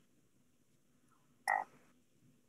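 Near silence on a video-call audio line, broken once about one and a half seconds in by a single short blip.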